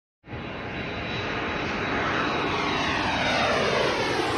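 A rushing engine noise that starts suddenly and grows steadily louder, with its tones sliding downward in pitch as it passes.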